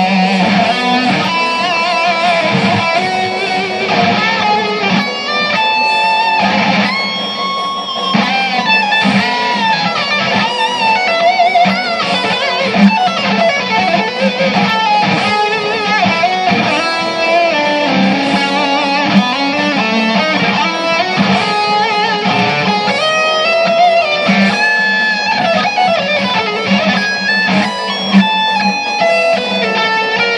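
Guitar playing a long unbroken run of quick single notes and chords, with some notes bent up and down in pitch.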